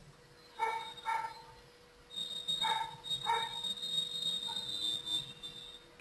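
Four short, faint pitched animal calls in two pairs, the calls in each pair about half a second apart, with a steady high whine in the middle stretch.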